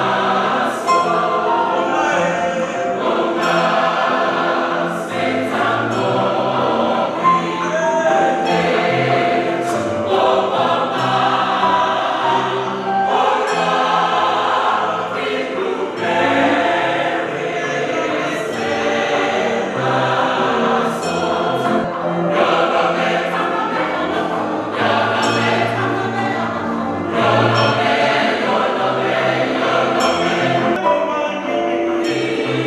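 Church choir singing a Christian choral song, many voices together in sustained, continuous singing.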